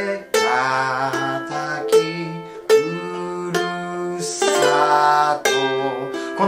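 Ukulele fingerpicked in a slow three-beat arpeggio through G7, Am and F chords, each pluck ringing on, with a man's voice singing the melody along with it.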